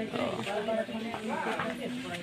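Voices talking indistinctly, with no clear words.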